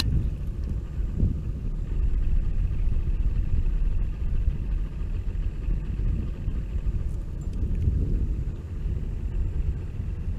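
Boat's outboard motor idling with a steady low rumble and a faint thin whine above it.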